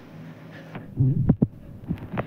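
Soft low thumps and a brief rumble about a second in, over a steady low hum.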